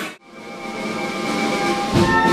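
Live rock band music breaks off abruptly. After a brief dip, a brass band fades in playing sustained chords.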